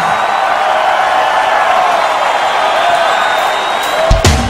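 Large open-air festival crowd cheering and applauding in a steady wash of noise.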